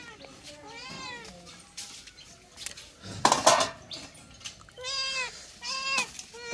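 Domestic cat meowing for food, its calls rising and falling in pitch: one meow about a second in and two close together near the end. A brief noisy burst sounds about halfway through.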